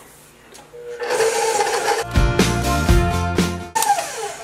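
Background music with sustained pitched notes, coming in about a second in, and a low bass line that shifts pitch in steps partway through.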